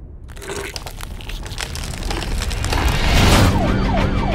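Trailer sound design: a crackling, rising noise builds to a loud swell about three seconds in. A siren then starts wailing near the end.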